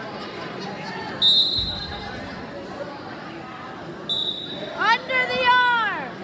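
Spectator babble in a gym during a wrestling bout, with two short, shrill high-pitched tones about three seconds apart. Near the end comes a loud, drawn-out shout from a high voice that rises and then falls in pitch.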